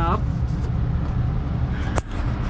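Pickup truck engine idling, a steady low rumble. A short click comes near the end.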